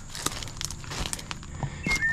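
Light crackling and scuffing of footsteps and movement in dry brush and leaf litter, a scatter of small sharp clicks, over a steady high-pitched insect drone.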